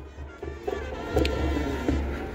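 Music playing in the distance, mostly its low bass beat carrying, with faint melody above it.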